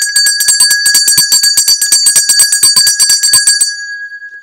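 A small bell rung rapidly and loudly, about ten strikes a second, with one clear ringing tone. It stops being shaken near the end and rings away.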